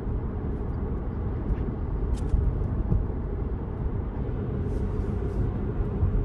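Steady road and tyre noise inside a Tesla's cabin while cruising at about 40 mph: a low, even rumble with no engine sound, broken only by a few faint ticks.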